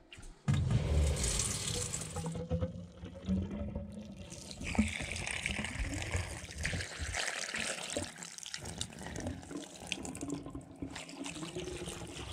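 Water running down a newly fitted PVC sink drain line and pouring in a steady stream out of the pipe's outlet through the wall. The sound is loudest in the first two seconds and turns to a brighter, hissing splash about five seconds in.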